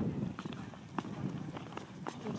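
A group of walkers talking among themselves as they go, with footsteps crunching in snow; a few sharper steps stand out.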